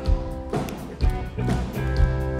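Live rock band playing the instrumental opening of a song: electric guitar and bass holding chords over a drum beat, with a low kick-drum thump about once a second.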